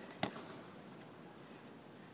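A single sharp slap on a wrestling mat about a quarter second in, as two wrestlers scramble.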